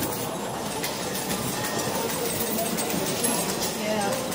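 Busy casino floor ambience: a steady murmur of many voices mixed with frequent small clicks and clatter.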